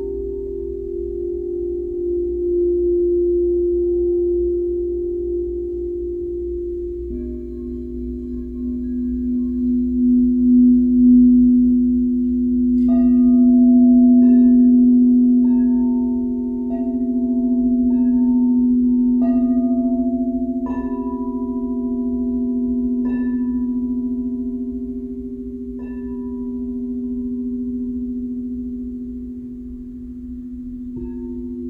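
Quartz crystal singing bowls ringing in long, steady low tones that swell and pulse slowly. A lower bowl joins about seven seconds in. From a little before halfway, a string of struck, higher bell-like notes rings out over them, about eight strikes.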